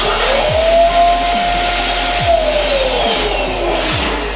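Electric twin-nozzle balloon pump running as it inflates two latex balloons at once: the motor spins up at the start, holds a steady whine, then sinks in pitch over the last couple of seconds as the balloons fill.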